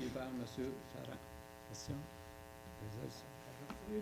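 Steady electrical mains hum with many even overtones, under faint murmured voices.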